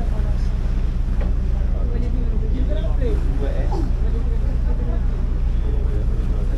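Passenger ferry's engine giving a steady low drone, heard from the open deck, with voices talking in the background.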